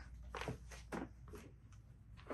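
A few faint, soft footsteps on carpet, landing at irregular intervals.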